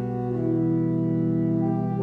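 Organ playing slow, sustained chords, with the harmony moving to a new chord about half a second in and again near the end.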